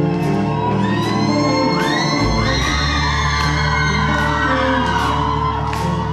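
Live rock band playing loudly: electric guitars, bass and a drum kit with regular cymbal strokes, echoing in a large hall. High wailing notes glide up and down over the band through the middle, and the bass comes in heavier a little over two seconds in.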